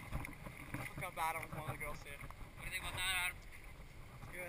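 Faint voices calling out twice, wavering in pitch, about a second in and again near the three-second mark, over a low rumble of wind on the camera microphone.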